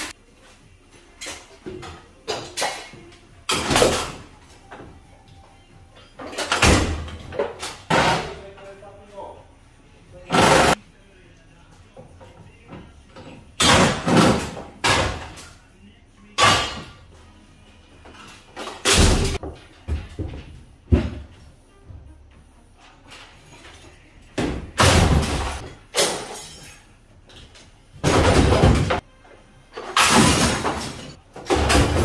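Scrap metal parts being thrown into the back of a van, making loud, irregular metallic crashes and clangs, about a dozen of them with ringing after each.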